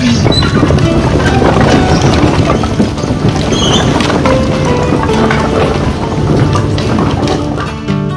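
Split firewood tumbling out of a tipping dump trailer bed onto pavement, a dense run of knocking and clattering wood pieces, with background music playing throughout.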